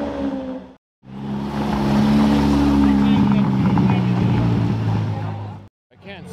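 A car engine running at a steady speed for about four and a half seconds, with faint voices, set between two short cuts to dead silence.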